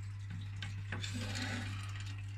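Running aquarium equipment: a steady low hum under soft trickling water, with a couple of faint ticks.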